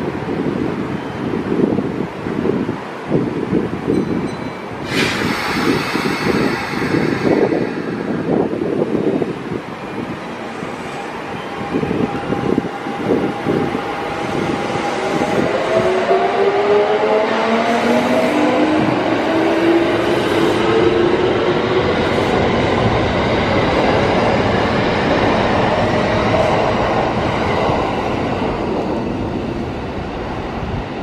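Kintetsu red-and-white electric commuter train pulling out of the station. There is a sudden hiss about five seconds in, then the traction motors whine, several tones rising together in pitch as the train gathers speed.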